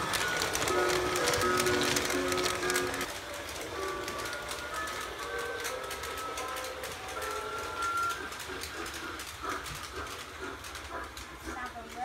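Battery-powered toy Christmas train running on its plastic track, its built-in speaker playing an electronic melody that is loud at first and fainter about three seconds in, over quick clicking from the running train.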